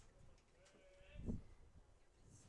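Faint open-air ballpark ambience with a distant, drawn-out voice-like call and a single dull thump about a second and a quarter in.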